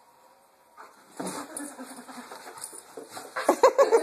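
Doberman vocalizing excitedly as it lunges for a treat held just out of reach, starting about a second in. Near the end a person breaks into rhythmic laughter.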